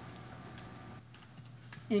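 Light typing on a computer keyboard: a short run of soft clicks in the second half, over a steady low electrical hum.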